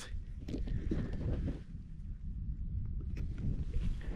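Wind buffeting the camera's microphone, an uneven low rumble, with a few faint knocks from the camera being handled.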